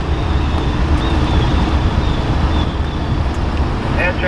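CSX diesel freight locomotives running, a steady deep rumble with a faint high whine that comes and goes.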